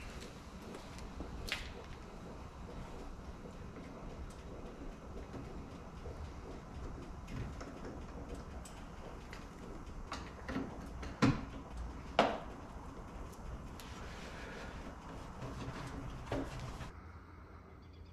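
Handling noise from work in a car's engine bay: a few scattered short knocks and clicks, the strongest three close together about ten to twelve seconds in, over a low steady rumble of garage room noise.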